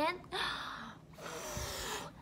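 A woman blows two long puffs of breath out through pursed lips, miming blowing up a bubble-gum bubble.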